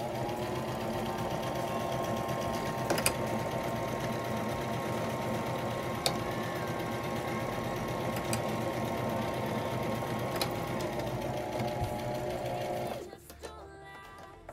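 Brother electric sewing machine running steadily at stitching speed, sewing back and forth over one spot to reinforce the seam. The motor whine picks up at the start, slows about ten seconds in and stops shortly before the end, with a few sharp clicks along the way.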